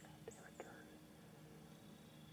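Near silence, with faint whispering and two soft clicks in the first second.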